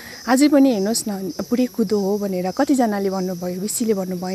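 A woman speaking, with a steady high-pitched chirring of insects behind her voice.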